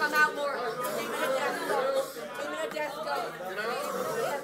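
Several voices talking over one another at once, too indistinct to make out: a room full of people speaking and praying aloud.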